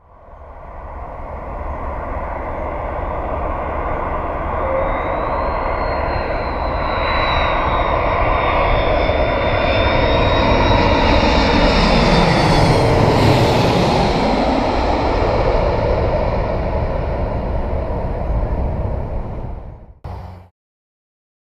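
A low-flying airliner passing overhead: its engine noise builds steadily, is loudest a little past the middle, then fades away, with a high whine heard in the first half.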